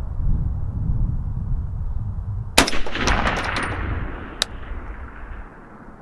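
A single rifle shot from a semi-automatic FN SCAR about two and a half seconds in: a sharp crack followed by about a second of rattling echo that fades away. A single sharp click follows near the end, over a low wind rumble on the microphone.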